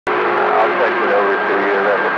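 CB radio receiving on channel 28: a garbled, unintelligible voice comes through over static hiss, with a thin steady whistle running underneath.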